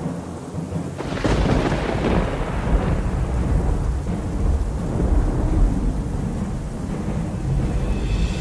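Thunder rumbling over steady rain, with a long low roll that swells about a second in and carries on.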